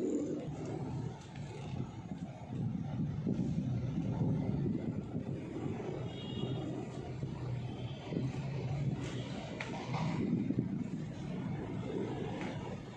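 Car engine and tyre rumble heard from inside the cabin while driving slowly in traffic, a steady low drone rising and falling slightly.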